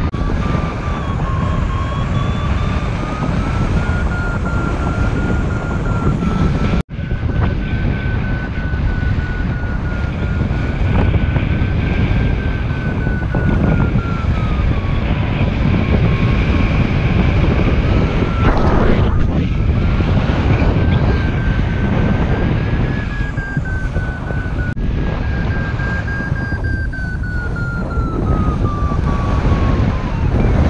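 Airflow buffeting the camera microphone in paraglider flight: a loud, steady rushing, with a thin whistle that slowly wavers up and down in pitch. The sound cuts out for an instant about seven seconds in.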